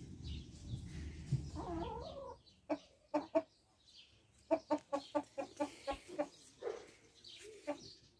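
Chickens clucking: a few short clucks, then a quick run of about eight evenly spaced clucks, with more scattered clucks near the end. A low rumble runs under the first couple of seconds.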